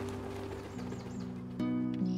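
Background music: held notes that fade down, then a new chord that comes in near the end.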